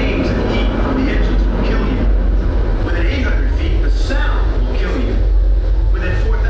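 Speech played over the pre-show's loudspeakers, on top of a steady deep rumble that runs underneath.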